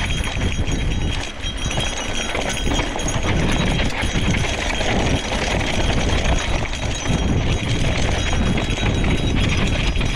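Gravel bike descending a rough dirt singletrack: tyres rolling over the bumpy trail and the bike rattling with many small irregular knocks, under a steady rumble of wind on the microphone.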